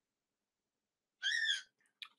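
Dead silence, then about a second and a quarter in a brief, soft, whispery vocal sound from a woman at the microphone, with no low voice behind it.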